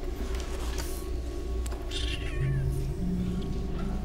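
A kitten meows once about two seconds in, a short high call that falls in pitch.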